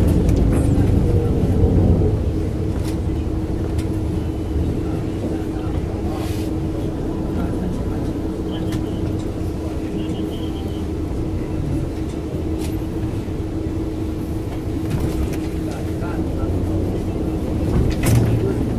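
Tram running along a street, heard from on board: a steady low rumble from the wheels on the rails, with a constant hum setting in about two seconds in and a few light clicks and rattles.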